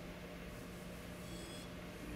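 Chalk drawing curved lines on a blackboard, faint, with a brief high chalk squeak about a second and a half in, over a steady low room hum.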